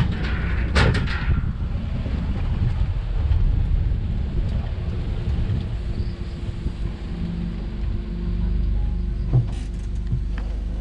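Low, steady rumble of an open-sided shuttle car driving, with two sharp knocks in the first second and another short knock near the end.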